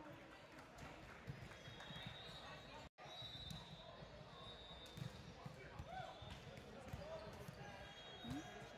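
Quiet gym ambience during a volleyball match: faint distant voices and calls, occasional high squeaks and the low thuds of the ball. The sound cuts out completely for a moment about three seconds in.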